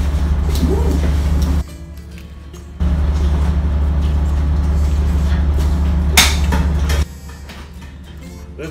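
Steady low drone of a ship's machinery, which cuts out abruptly for about a second near the start and again near the end. A sharp click comes about six seconds in.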